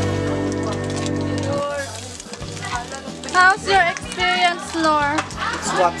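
Background guitar music that ends about a second and a half in, followed by young people's voices talking and exclaiming.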